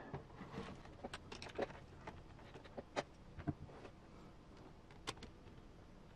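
Faint, scattered clicks and taps of small parts and hardware being handled during hand assembly of a 1/10 RC crawler chassis, with the sharpest clicks about three and five seconds in.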